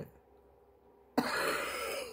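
A woman's short breathy laugh, about a second long, coming a little past halfway after a pause of near silence.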